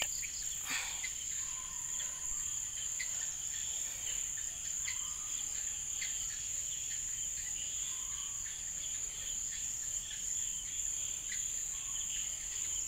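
Insects trilling in a steady, high-pitched chorus that does not let up.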